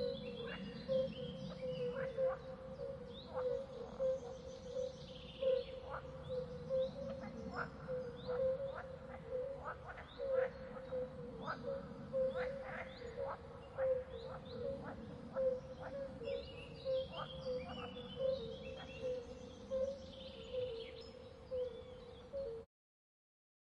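Wildlife ambience: short bird chirps about once a second, with clusters of higher twittering, over a steady pulsing drone.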